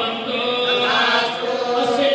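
Male priests chanting Sanskrit mantras during a homa fire ritual, the voices holding long, steady notes.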